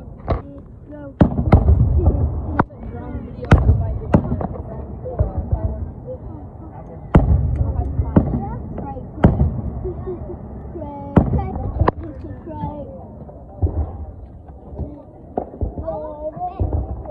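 Fireworks going off: about ten sharp bangs at irregular intervals, each followed by a low rumble, with background voices underneath.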